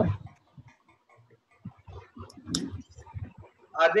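Faint keyboard typing: a few scattered soft clicks, one sharper one about halfway through.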